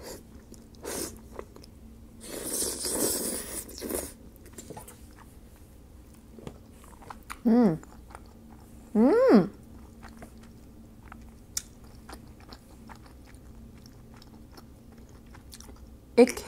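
Mouth sounds of eating creamy malfaldine pasta: a loud stretch of wet slurping and chewing a couple of seconds in, then two short hummed "mm" sounds, then quieter chewing with a few small clicks.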